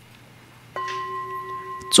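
A metal ritual bowl bell struck once about three-quarters of a second in, ringing on in a few steady, clear pitches; it marks the step from one stage of the liturgy to the next.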